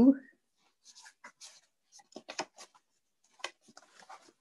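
Greeting-card stock being handled and pressed: a string of short, light scrapes and taps of card on card.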